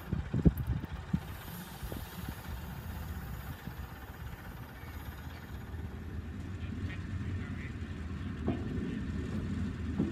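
Narrow-gauge diesel train running along the track: a steady low engine rumble, with a few sharp wheel clicks over the rail joints in the first second or so.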